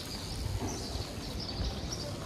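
Street ambience: a low, uneven rumble of wind on the microphone and traffic, with faint high chirps scattered through it.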